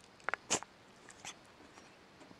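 Domestic cat sneezing: a quick run of sharp sneezes about half a second in, then a fainter one just past a second. It is part of a sneezing fit that will not stop, which the owner wonders may be a cold.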